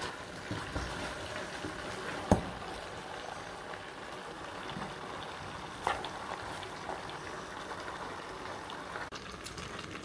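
A pan of chopped greens with yam and plantain simmering, a steady bubbling hiss of hot liquid. Two sharp knocks sound against it, about two seconds in and again about six seconds in.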